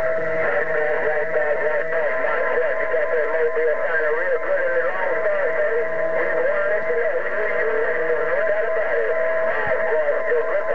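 A distant station coming in over an HR2510 radio: a warbling voice that can't be made out, over a steady whistle.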